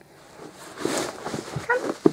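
Rustling of a quilted fabric dog mat being handled, then a short, high whine from a young dog near the end.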